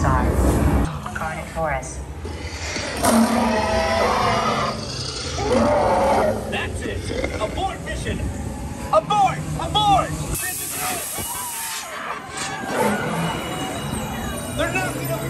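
Ride audio aboard the DINOSAUR dark ride: the motion-base vehicle rumbling and jolting under a soundtrack of dinosaur roars and shrieking calls, with a burst of hiss a little past the middle.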